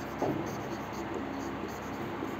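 Marker pen writing on a whiteboard: faint rubbing strokes of the tip across the board as a word is written.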